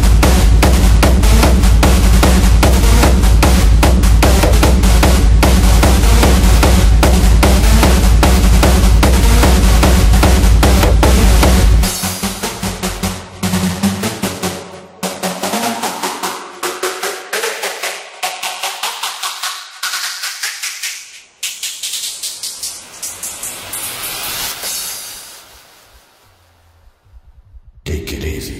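Hardstyle electronic dance track with a loud, pounding kick drum and bass. About twelve seconds in, the kick and bass drop out into a breakdown of lighter percussive hits. The sound is then filtered steadily upward until only a thin hiss is left, and it nearly fades out shortly before the end.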